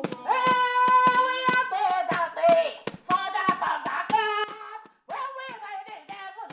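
A woman singing through a handheld megaphone, with hand claps keeping a steady beat of about two a second and a brief break about five seconds in.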